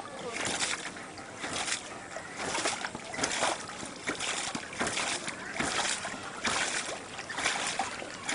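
Water gushing in pulses from a treadle pump's outlet into a plastic bowl, about one surge a second, each surge a splash as a pump stroke pushes water out.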